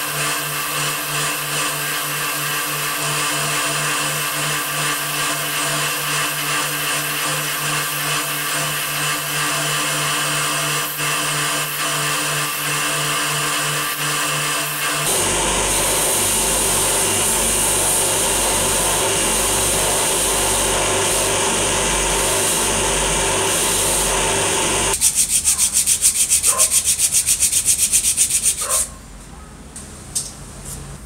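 Rotary wire wheel brush spinning on a motor spindle, with a steady motor hum, scrubbing the armature fan of an electric drill motor and then its housing. About halfway through the rubbing gets lower and louder. Near the end it becomes a fast, even chatter for a few seconds, then falls away.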